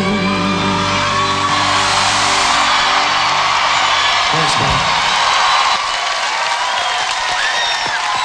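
Live rock performance: a male singer's held note ends about a second in, then the audience whoops and cheers over the band.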